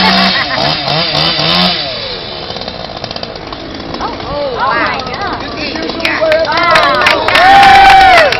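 Gasoline chainsaw running while being juggled, its engine note sweeping up and down over and over as it turns in the air, with a louder, steadier high note near the end.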